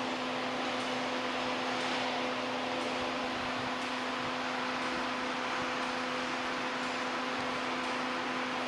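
Steady fan-like whir with a constant low humming tone.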